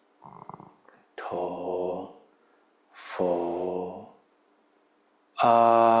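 A Buddhist monk chanting the Buddha's name (nianfo) in slow, drawn-out syllables, three of them, with short pauses between.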